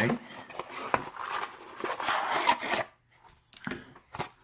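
Rubbing and rasping of a small product package being handled and opened by hand, swelling past the middle and then stopping, followed by a few light clicks near the end.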